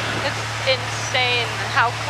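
1966 Cessna 172G's six-cylinder Continental O-300 engine droning steadily at slightly reduced power in a descent, heard as cockpit audio. A voice speaks briefly over the drone.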